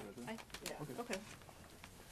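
Faint off-microphone voices murmuring, dying away after about a second into quiet room tone.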